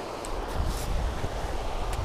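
Wind buffeting the microphone: a steady low rumble that grows stronger about half a second in, over a faint even hiss.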